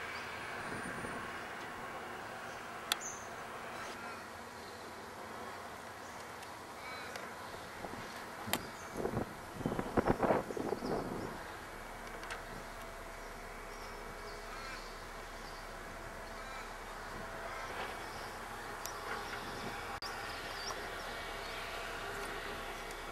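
Heavy earthmoving machinery at a rubble site running with a steady drone. There are a couple of sharp knocks, then a louder burst of clattering and banging of rubble about nine to eleven seconds in.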